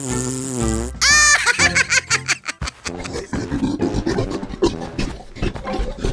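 Cartoon sound effects: a wavering, pitched comic sound through the first second, then a quick rising warble, followed by background music with a quick steady beat.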